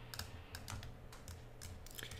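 Faint, light clicks of a computer keyboard and mouse at uneven intervals, over a low steady hum.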